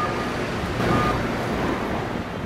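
City street traffic: a steady rumble of passing vehicles, with a short high beep repeating about once a second.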